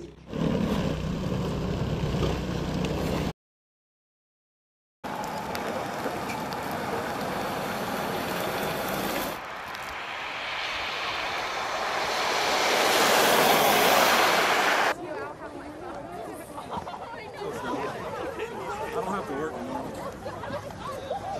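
A single-stage snowblower running steadily for about three seconds before a cut. Then a car stuck in snow, its wheels spinning and throwing snow as the engine is revved, growing louder to the loudest point and stopping abruptly about three-quarters of the way in. After that, a group of people's voices outdoors.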